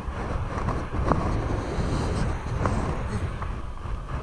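Wind buffeting a body-worn camera's microphone in a steady low rumble, with a few light knocks, one about a second in and another near the middle.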